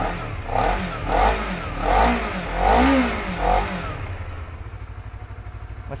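A 2016 Honda CBR250RR's 250 cc parallel-twin engine idling and being blipped with the throttle five times in quick succession, each blip a short rise and fall in revs, before it settles back to a steady idle. The seller calls the engine smooth.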